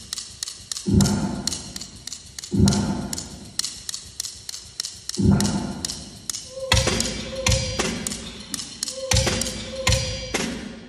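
Solo snare drum piece played with drumsticks: a quick, even run of light taps and clicks, with deep thumps every one to two seconds. In the second half a held ringing tone sounds under two of the thumps.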